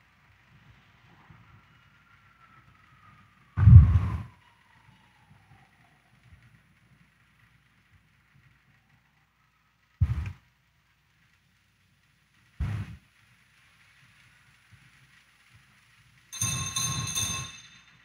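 A quiet pause in a church service, broken by a few short knocks and, near the end, a brief ringing note of about a second and a half.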